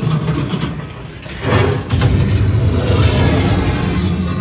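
Loud low rumbling noise from a haunted house's sound effects, dipping briefly and then swelling back up about a second and a half in.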